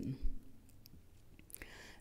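A short pause in speech: quiet room tone with a few faint, sharp clicks.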